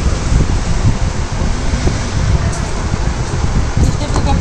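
Steady rumbling noise of air buffeting the microphone, strongest in the low end, with no clear events standing out.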